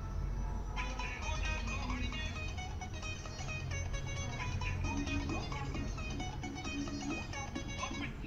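A song playing through a small loudspeaker in a cardboard box driven by a voice-controlled Arduino music player, with quick, bright notes that fill in about a second in, over a steady low hum.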